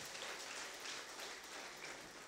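Faint, even background noise of a large hall with people in it, with a few soft clicks.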